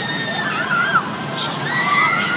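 Riders screaming on a carnival thrill ride as its arm swings and the seat wheel spins: several long, wavering screams overlapping.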